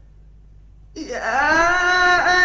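Faint background hiss, then about a second in a man begins chanting Quran recitation in the melodic mujawwad style. His voice glides up in pitch and settles into a long held note.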